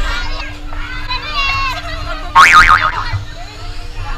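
Young women riders shrieking, squealing and laughing on an amusement park thrill ride, with one loud wavering scream a little past halfway. A steady low hum and a low wind rumble on the microphone run underneath.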